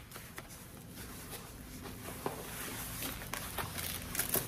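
Faint rustling of a soft body armor vest's fabric carrier, with a few light ticks, as the vest is lifted off over the head.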